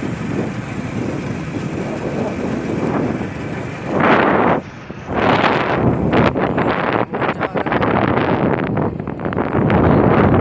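Rumble of a car in motion with wind noise on the microphone. The noise surges loud about four seconds in, drops out briefly, then stays loud with crackling buffets.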